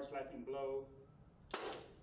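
Metal unit-weight measure full of coarse aggregate dropped onto a steel pan during jigging compaction: one sharp slap with a brief rattle of stones about one and a half seconds in. A voice trails off at the start.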